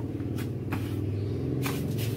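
A steady low motor rumble with a few short sharp knocks over it.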